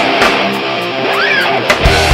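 Live stoner metal band: distorted electric guitar holding chords, then drums and bass come in heavily with a sharp hit near the end.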